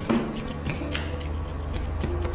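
Wooden chopstick poking through crumbly almond crumble and tapping a glass bowl: a quick, uneven run of light clicks. Soft background music plays with held notes and a steady bass.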